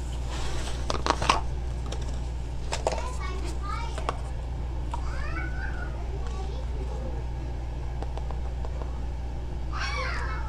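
Light clicks and taps of a jar and a small metal cup being handled on a table, about a second in and again near three seconds, over a steady low hum. Faint high voices rise and fall in the background through the middle and near the end.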